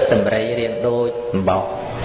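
A Buddhist monk's voice chanting: one held, steady note lasting about a second, then a shorter one.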